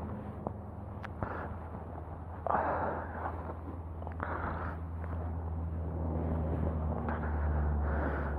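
A steady low engine hum that grows a little louder toward the end, with two brief rushes of passing vehicles a few seconds in.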